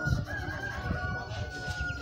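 A rooster crowing: one long drawn-out call held almost to the end.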